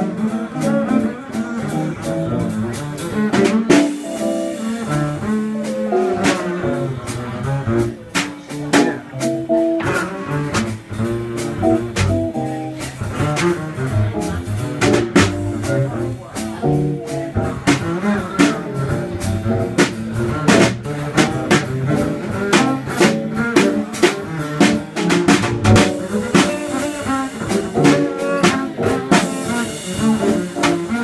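A live jazz combo playing: drum kit with frequent sharp drum and cymbal strokes, over guitar and double bass lines.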